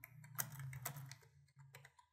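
A quick run of computer keyboard key clicks over the first second and a half, over a faint low hum.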